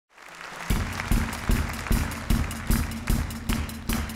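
Live band's drum kit playing a steady beat of hard hits with a deep low end, about two and a half a second, over a held low note, faded in from crowd and room noise in the first half-second.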